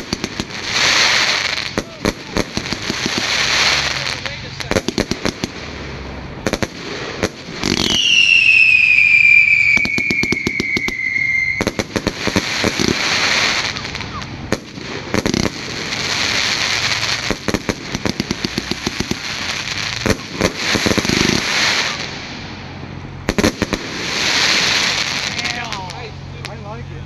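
Consumer fireworks going off: rapid bangs and crackling, broken by stretches of rushing hiss. About eight seconds in, a whistling firework gives a long whistle that falls in pitch over some four seconds.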